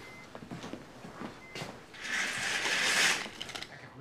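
Window blinds being drawn shut: faint light ticks, then about two seconds in a swishing rattle of the slats that lasts over a second and fades out.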